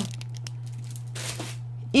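Plastic packaging rustling and crinkling as a clear plastic storage box and plastic bags are handled, with a brief louder rustle a little over a second in. A steady low hum runs underneath.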